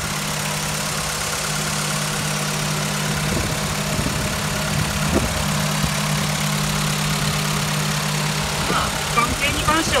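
Honda Integra Type R (DC2) B18C 1.8-litre DOHC VTEC four-cylinder engine idling steadily at an even, settled idle, heard close up from the open engine bay.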